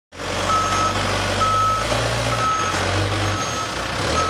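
Backhoe loader's diesel engine running with its reverse alarm sounding: evenly spaced single-pitched beeps, a little under one a second, over a steady engine hum.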